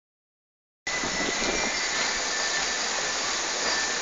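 Steady outdoor rushing noise, strongest in the upper range, beginning just under a second in, with a faint thin high tone running through it.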